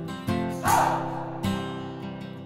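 Background music: a song's strummed acoustic guitar chords, between sung lines.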